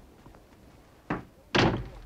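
A shed door being banged open: a sharp knock about a second in, then a louder bang half a second later that trails off.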